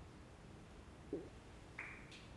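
Near-quiet room tone with two brief faint sounds: a short low blip about a second in, and a short higher-pitched sound near the end.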